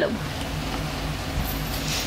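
A last word of speech at the very start, then steady background noise with a faint low hum.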